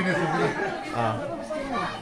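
People talking over one another in indistinct chatter.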